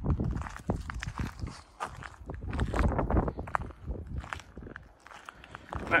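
Footsteps of a person walking on rough, wet ground, an irregular series of short scuffs and crunches.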